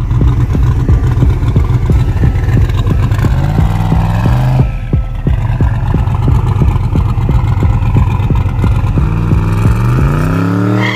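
Twin-turbo first-generation Ford Mustang's engine idling with an even pulsing beat, briefly revved about four seconds in. Near the end the revs climb sharply as the car launches and the rear slicks spin.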